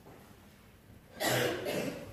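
Faint room quiet, then a single cough about a second in.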